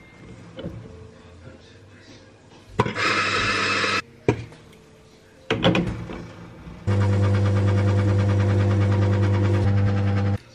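La Marzocco espresso machine's pump humming steadily while a shot pulls into two cups, starting about seven seconds in. A brief one-second whir comes about three seconds in.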